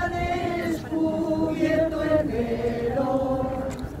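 A crowd of voices singing a slow procession hymn together, holding long notes that step down and up in pitch.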